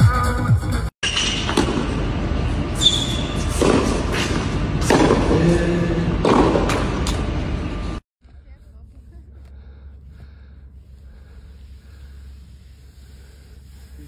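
Loud electronic dance music cuts off about a second in. People then talk and laugh loudly for several seconds, and after an abrupt cut only a faint low hum remains.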